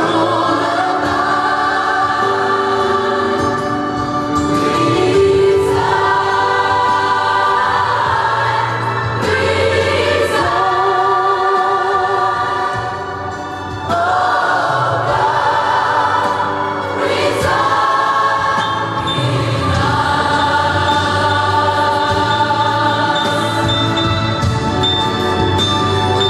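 Large gospel choir singing held chords phrase by phrase in a cathedral, the voices briefly softer just past halfway before the next phrase comes in.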